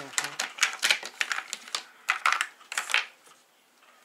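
Hollow plastic shape-sorter blocks clicking and clattering against each other and the tabletop as they are handled, a quick run of knocks that stops about three seconds in.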